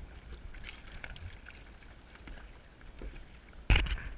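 Choppy sea water lapping and splashing against a sea kayak's hull, with a steady low rumble of wind on the microphone. A loud sudden knock with a splash comes near the end.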